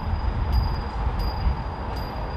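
Wind buffeting the microphone: a low, uneven rumble, with a faint steady high tone above it.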